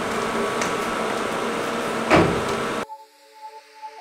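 A steady hiss with one short thump just after two seconds in. Then it cuts abruptly to soft background music with held notes and a simple melody.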